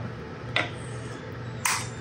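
Quiet handling at a mixing bowl as oil is poured from a glass measuring cup, with a faint click about half a second in and a short hissing rustle near the end.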